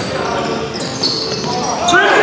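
A basketball bouncing on a hardwood gym floor, with a sharp bounce about a second in, and short high squeaks of sneakers on the wood, over players' voices in a large gym.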